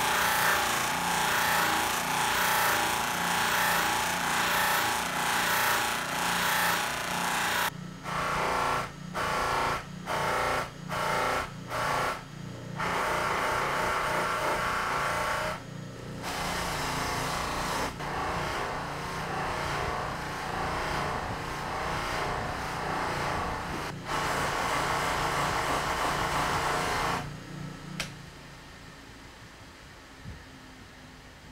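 Rikon bench buffer motor running with a steady hum while a resin-stabilized wood handle and a bar of buffing compound are pressed against its spinning cotton buffing wheel. The sound breaks off and resumes several times in quick succession about a third of the way in, then drops much quieter near the end.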